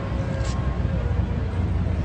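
Steady low rumble of city street traffic, with a brief sharp scratch about half a second in.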